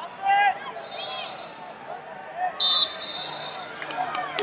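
A loud shout from the mat side, then a referee's whistle blown once, short and shrill, about two and a half seconds in, stopping the wrestling.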